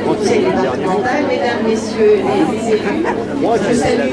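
Voices only: people in a crowd chatter over one another, and near the end a woman speaking into a microphone resumes.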